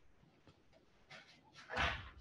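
Quiet room tone for most of the stretch, then a man's short voiced 'um' near the end as he starts to speak.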